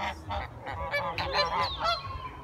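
Geese honking: a quick run of short, overlapping honks.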